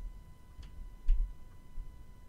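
Handling noise: a couple of faint ticks, then a low thump about a second in and a smaller bump near the end, over a faint steady high-pitched tone.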